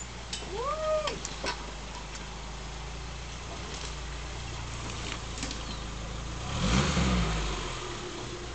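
Suzuki Samurai's engine running slowly in gear as it crawls down a muddy rut, with a short burst of revving and churning noise about three-quarters of the way through. A brief rising-and-falling squeal and a few sharp clicks come about a second in.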